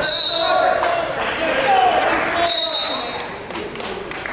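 Coaches and spectators shouting in a large gym, with short high squeaks of wrestling shoes on the mat. A few sharp thuds come near the end as the wrestlers hit the mat.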